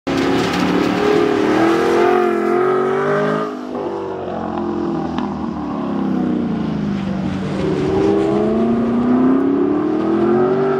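2014 Chevrolet Camaro's engine revving as it is driven through an autocross course: the pitch climbs for about three seconds, drops off sharply, sinks lower as the car slows, then climbs again near the end.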